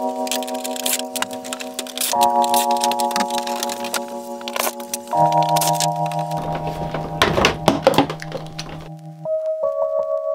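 Background music of held chords that change every few seconds, over irregular knocks and clatters from the shower faucet fixtures being pried and pulled apart. The knocks are thickest about seven to eight seconds in and stop about nine seconds in.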